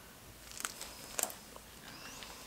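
Gloved hands handling soap and shredded soap in a plastic container: a few faint, short clicks and rustles, the clearest about half a second and a second in.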